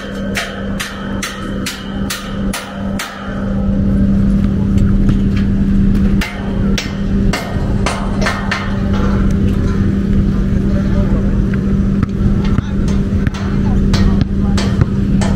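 Irregular metallic knocks and clanks of aluminium stage truss sections being handled and assembled, densest in the first few seconds. Under them runs a steady low hum, and a rumble of wind or traffic swells from about four seconds in.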